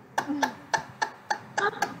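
A series of sharp clicks, about six spaced irregularly at roughly three a second, with a brief vocal sound among them early on.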